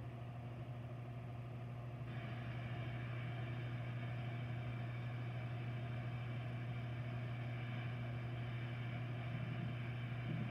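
Faint thunderstorm recording played through classroom speakers: a steady low rumble, with a steady rain-like hiss that comes in about two seconds in as the video starts.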